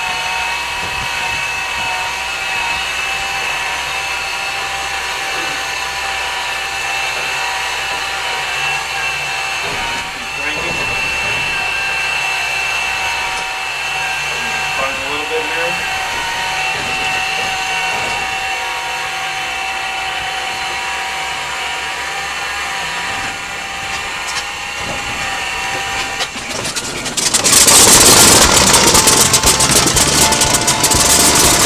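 Starter of a Corsair's Pratt & Whitney R-2800 two-row radial aircraft engine cranking it over with a steady whine on a cold start. About 27 seconds in, the engine fires and catches, and the sound jumps to the much louder, rough sound of the radial running.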